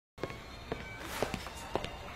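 Footsteps: slow, even steps, about two a second.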